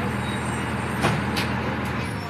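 Tour trolley's engine idling at a stop, a steady low hum, with two short sharp clicks just over a second in.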